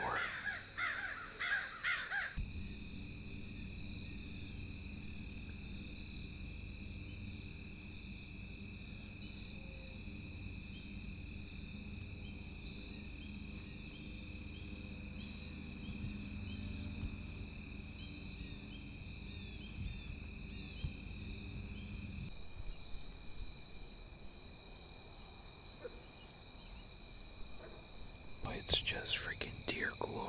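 Woodland ambience: a steady high-pitched insect drone, over a low rumble that starts suddenly a couple of seconds in and cuts off abruptly about three-quarters of the way through.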